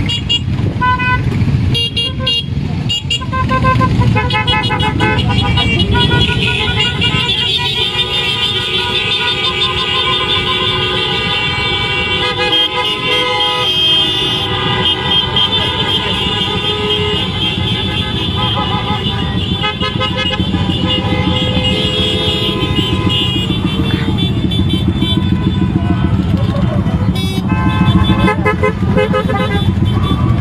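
Many motorcycle engines running together in a slow, dense column, with horns honking over them; through the middle stretch several horns are held down at once for a long time.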